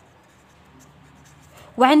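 Pen writing on paper, a faint, steady scratching. A woman's voice starts talking near the end.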